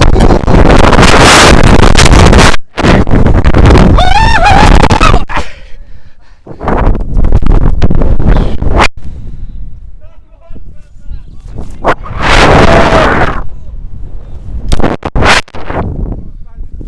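Wind blasting the body-mounted action camera's microphone during a rope jump freefall, a loud distorted roar for the first five seconds with a wordless yell from the jumper about four seconds in. Then come further gusts of wind roar as he swings on the rope, with another yell about twelve seconds in.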